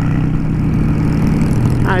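Honda Shadow 600's V-twin engine running at a steady cruise, heard from the rider's seat with wind noise on the microphone. A voice starts speaking near the end.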